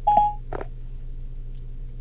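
A short electronic beep through the car's speakers over the Bluetooth hands-free link, Siri's signal that it has stopped listening and is handling the spoken request, followed about half a second later by a brief click. A low steady hum runs underneath.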